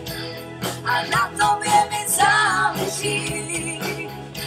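Live band playing a pop song: sung vocals over bass guitar and keyboard.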